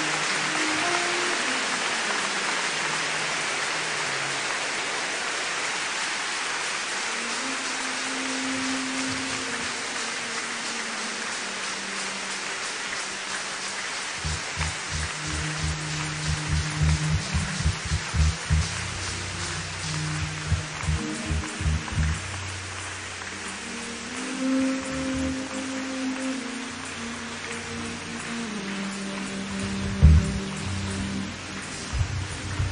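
Large congregation applauding, the clapping slowly dying away. About halfway through, church band music with a low bass line comes in.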